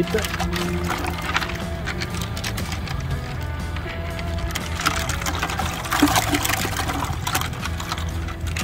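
Water sloshing and splashing in a plastic bucket as a gloved hand swishes a CB antenna base through it, rinsing off acid. Steady background music plays throughout.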